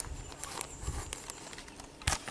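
Faint, scattered rustling and scratching of a cloth being handled and rubbed between fingers as dried hashish is worked off it.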